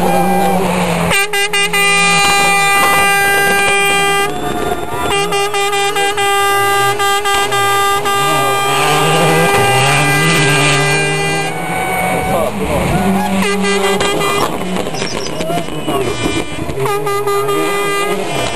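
Air horns blaring in long steady blasts, one of about three seconds and then one of about six seconds, with a shorter blast near the end, over people's voices. A rally car's engine rises and falls underneath.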